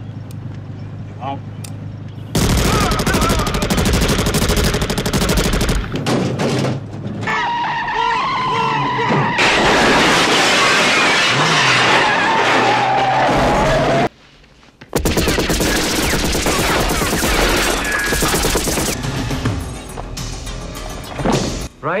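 Action-film soundtrack of rapid automatic gunfire in two long stretches, with a car windshield shattering under the shots about halfway through and music underneath.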